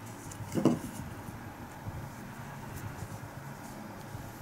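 Faint rustling and light scratching of cotton yarn and a crochet hook being worked by hand, with one brief soft sound about half a second in.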